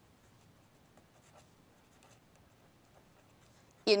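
A felt-tip pen writing a line of handwriting on paper: faint, short strokes of the tip across the sheet.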